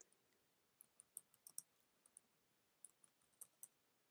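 Faint computer-keyboard keystrokes as a short search query is typed: about a dozen light, irregular clicks spread over a few seconds.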